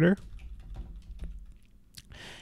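Typing on a computer keyboard: a quick run of light keystroke clicks.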